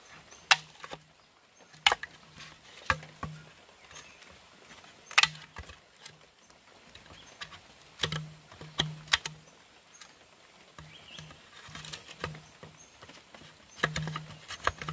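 Machete blade chopping and prying into a green bamboo pole to cut a notch: irregular sharp knocks of the blade biting the bamboo, several of them loud, with quieter scraping and tapping between.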